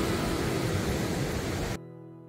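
Intro music fading out under a steady hiss, then cut off suddenly near the end, leaving a chord ringing and dying away.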